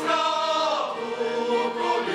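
A group of men singing a Slovak folk song together.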